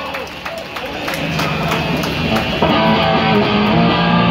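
Live hardcore punk band playing, with drums and cymbal hits. Electric guitars and bass come in about a second in and grow fuller and louder a little past halfway.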